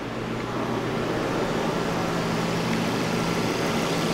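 2007 Volvo S40's 2.4-litre inline five-cylinder engine idling steadily, growing a little louder in the first second as the open engine bay is approached.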